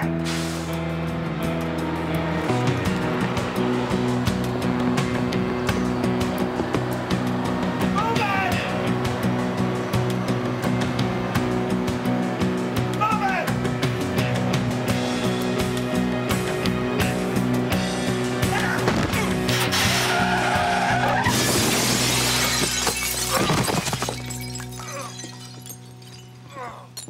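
Action music score with sustained tones and a fast ticking beat over vehicle noise. About 21 seconds in, a loud crash with shattering glass rises over the music for a few seconds, then dies away.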